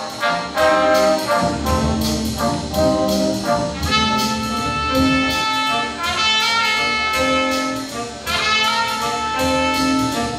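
A jazz band of saxophones, trumpets and trombones playing a piece together, with held and moving notes over a steady ticking beat.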